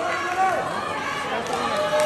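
Crowd voices in a boxing stadium: several people calling and shouting over one another, some with long drawn-out calls.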